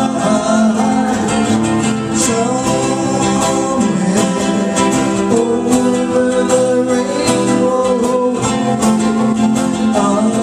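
Live acoustic song: a woman singing while strumming a ukulele, accompanied by a man on acoustic guitar.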